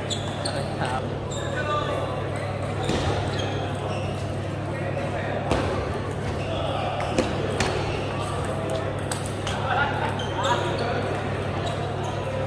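Table tennis balls clicking off paddles and tables as irregular single sharp ticks, over a steady low hum and the chatter of a busy hall.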